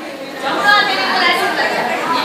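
Several people talking at once, mostly women's voices, in chatter rather than one clear speaker.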